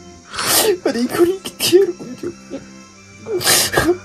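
A man in bed gives two sharp, noisy breath bursts, about half a second in and again near the end, each followed by short mumbled, moaning voice sounds. Background music with a steady low tone plays under it.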